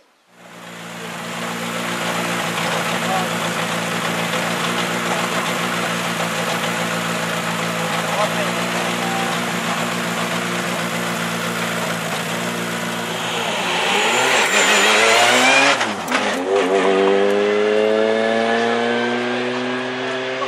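Škoda Fabia rally car's engine running at steady revs, then pulling away from a standstill a little after three-quarters of the way through, its note rising steadily as it accelerates.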